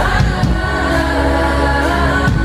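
Live pop-rock band playing: a sung lead vocal holding long notes over drums and a steady bass.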